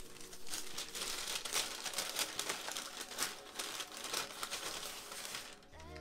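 A brown paper bag being opened out and handled, its paper crinkling and rustling in a run of quick crackles.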